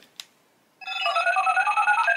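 Power Rangers Dino Knight Morpher toy's electronic sound effect: a click, then a short tune of beeping tones stepping up and down in pitch starts a little under a second in, sounding like someone making a phone call.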